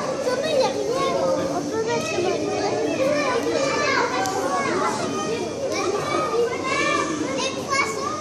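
Many children's voices chattering and calling out at once, high voices overlapping with some adult talk, with no words standing out.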